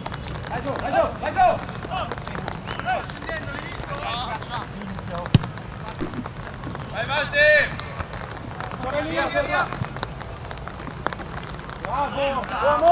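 Football players calling and shouting to each other during play on an outdoor pitch, with one sharp thud about five seconds in, typical of a ball being kicked, over a steady background hiss.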